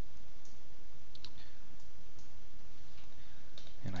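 A few faint computer mouse clicks, spaced irregularly, over steady background hiss.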